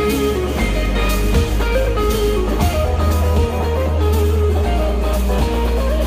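Live rock band playing an instrumental passage without vocals: an electric guitar melody over bass guitar and drums.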